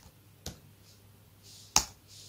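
Computer keyboard keystrokes: a few separate sharp key clicks, the loudest near the end, as a word is typed into a command line.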